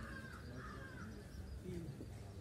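Faint bird calls: a few short arched calls in the first second, with quieter quick chirps higher up, over a low outdoor rumble.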